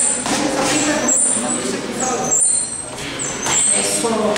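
Voices talking over a steady background noise, with a few sharp knocks.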